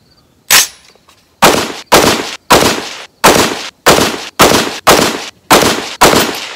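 Bear Creek Arsenal .308 AR-10 semi-automatic rifle firing a string of about nine shots: a single shot about half a second in, then eight more in quick succession, roughly two a second.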